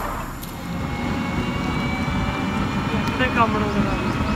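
Steady low rumble of an open-sided passenger rickshaw travelling along a road, with a faint steady high whine from about a second in. A man's voice starts near the end.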